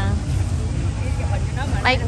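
A steady low rumble with faint crowd voices behind it, and one spoken word near the end.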